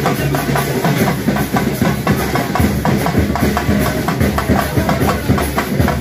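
Music with loud, steady rhythmic drumming.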